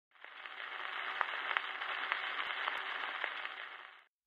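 Surface noise of a 1936 Brunswick 78 rpm shellac record before the music starts: a steady, narrow-band hiss with a few scattered clicks. It fades in just after the start and fades out near the end.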